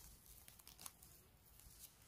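Near silence with a few faint soft ticks and rustles, the sound of a mushroom being picked from moss and grass.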